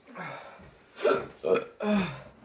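A man burping several times in quick succession, the last three burps close together and loudest.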